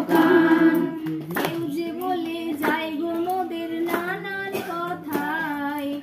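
Women singing a Bengali Christian devotional song, a female voice carrying the melody with others joining, over a steady clapped beat about twice a second.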